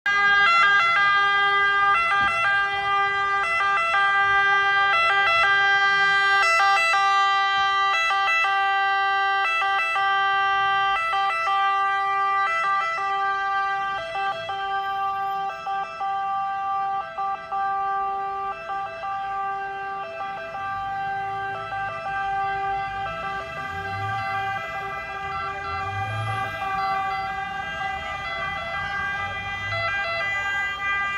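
Fire engine sirens sounding continuously, growing somewhat quieter in the second half. A low engine rumble from the arriving fire trucks joins in during the last third.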